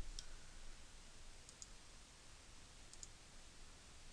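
Near silence broken by a few faint, short computer-mouse clicks, one just after the start, a close pair about a second and a half in and another about three seconds in.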